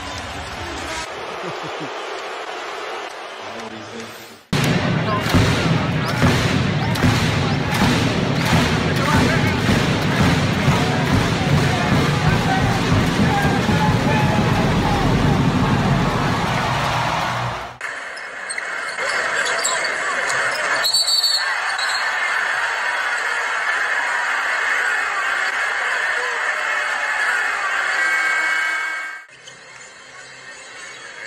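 Basketball arena game audio: crowd noise and players' voices, with loud music with a steady beat through the middle stretch. The sound changes abruptly about four seconds in and again about eighteen seconds in as one game clip gives way to the next.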